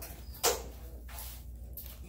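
A single sharp knock on a hard surface about half a second in, over a low steady hum.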